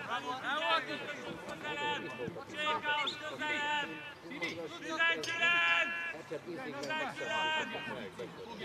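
Men's voices shouting and calling out across a football pitch, several overlapping, with no one voice steady for long.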